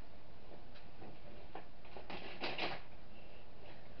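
A few soft rustles and light taps of sweet packets being handled on a table, loudest about two seconds in.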